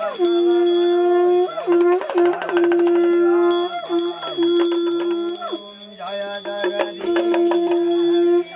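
Devotional puja music: a melody held on long, steady notes, broken every second or two by short gliding breaks, over the continuous high ringing of a small bell.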